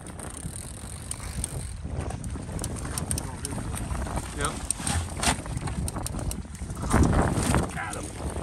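Strong wind buffeting the microphone, with water splashing as a thrashing muskie is netted beside the boat; the loudest rush comes about seven seconds in.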